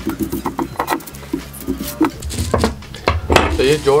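Sheet of thin kite paper rustling as hands smooth and shift it on a wooden table, with clicks and knocks of a steel ruler being picked up and set down on the wood. A man's voice briefly speaks near the end.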